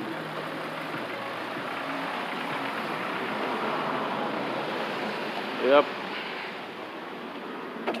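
Road traffic on a wet street: a vehicle's tyres hissing, swelling and then fading over several seconds.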